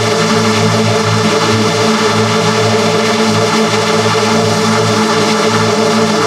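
TV channel ident jingle run through a heavy audio-editing effect, heard as a loud, dense chord held steady without a break.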